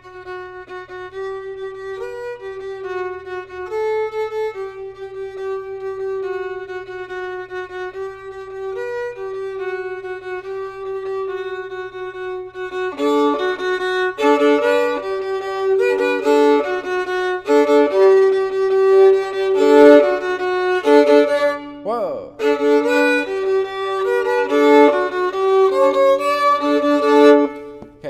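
Solo violin bowing soft, sustained double stops on the open D and A strings, then from about halfway playing louder, shorter notes (piano changing to forte).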